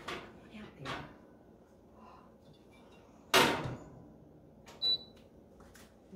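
Countertop toaster oven handled as a pan of biscuits comes out: small metal knocks of the pan sliding off the rack, then the oven door shutting with one loud, sharp clack about three seconds in, followed a moment later by a short click with a brief high tone.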